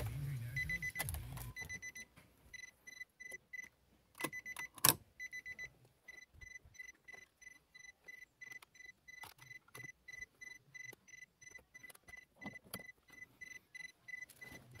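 Nissan Sylphy's engine is switched off with the ignition key, and its idle stops about a second and a half in. The car's warning chime then beeps rapidly at one pitch, about four beeps a second, with a couple of sharp clicks a few seconds in.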